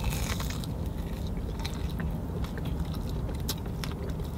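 Biting into and chewing a deep-fried egg roll with a crisp fried wrapper: a few sharp crunches among steady chewing, over a low steady rumble.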